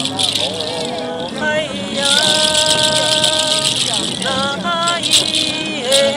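A hand rattle of strung yellow oleander (Thevetia) seed shells shaken steadily, a dense dry clatter. Over it a voice sings, with a long held note in the middle.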